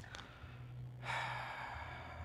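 A man sighs, a long breathy exhale into a microphone that starts about a second in, over a low steady hum from the room's sound system.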